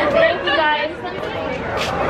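Speech only: people chatting, with a laugh.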